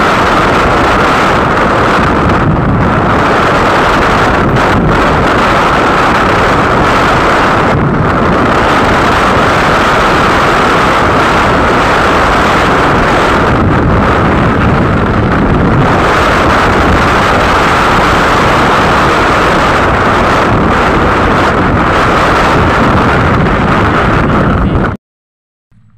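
Loud, steady wind rush on the microphone from riding a two-wheeler on an open road, with the vehicle's running noise underneath.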